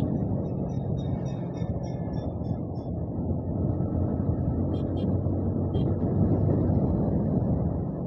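Motorcycle engine running steadily at cruising speed, about 70 km/h, with a steady rush of wind and road noise.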